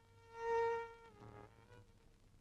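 Quiet background score: a single held instrumental note that swells about half a second in, then slips slightly lower in pitch and fades.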